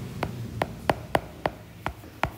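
A stylus tapping and clicking on a tablet screen while handwriting, about eight sharp light taps in quick succession.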